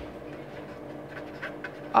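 Steady background hum and hiss, with a few faint scratches of a felt-tip marker writing on paper in the second half.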